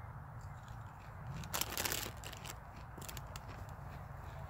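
Crunching of a ridged potato chip being chewed, in a few short crisp bursts around the middle, over a low steady rumble.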